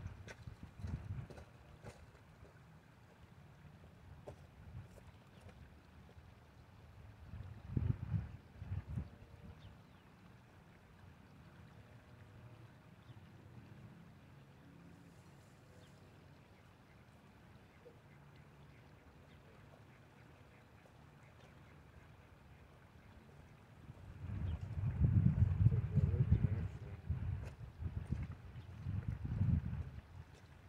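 Gusts of wind buffeting the microphone as low rumbles, briefly about a third of the way in and loudest over the last six seconds, over a faint steady background of flowing river water.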